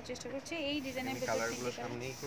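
A person talking, with a hiss lasting about a second in the middle.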